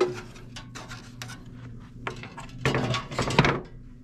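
Handling noise from the bathroom heater fan's plastic grill and sheet-metal housing: a few light clicks and knocks, then a louder rustling scrape with clicks a little before three seconds in, as the unplugged grill is set aside on the table.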